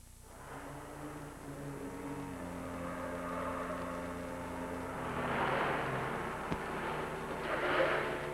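Street traffic: car engines running and cars passing, rising to a swell about five seconds in and again near the end.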